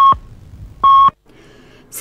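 Radio time-signal pips marking the hour: short, even electronic beeps about a second apart, two of them here, one at the start and one about a second in.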